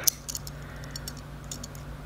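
Small metal purse-lock parts handled and fitted together, giving a few faint light clicks and ticks in the first second or so, over a steady low hum.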